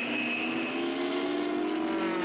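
Propeller airplane engine droning steadily, its pitch slowly rising.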